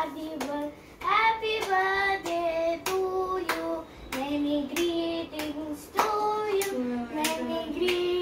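A child singing a birthday song in held, sing-song notes while clapping along, about two claps a second.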